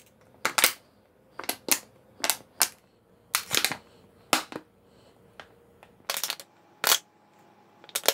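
Empty plastic water bottle crackling in short, sharp cracks as it is squeezed and released to suck egg yolks up from the whites. About a dozen cracks come at irregular intervals, often in pairs.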